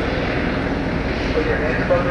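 A loud, steady rushing noise, with indistinct voices coming in near the end.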